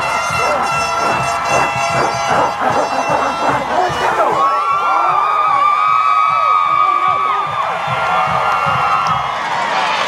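A football team and crowd shouting and cheering all at once. A steady horn note sounds over them for about three seconds in the middle.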